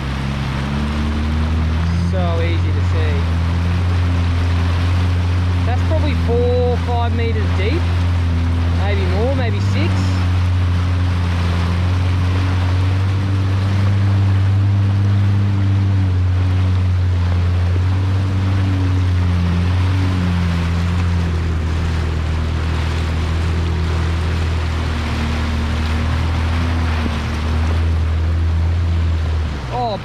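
Jet ski engine running steadily at a slow cruise, its low hum shifting slightly in pitch now and then with the throttle, over the hiss of water along the hull. The engine sound drops away just before the end.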